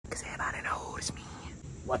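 A man whispering close to the microphone, then starting to speak aloud near the end.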